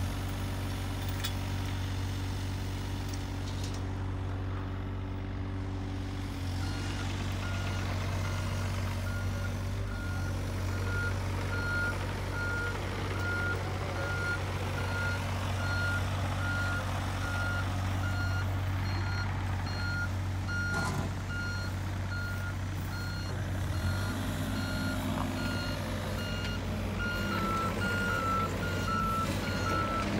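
Diesel engines of mini excavators and a truck running with a steady low rumble as a steel shipping container is pushed off a flatbed trailer. About six seconds in, a back-up alarm starts beeping at an even pace and keeps going over the engines.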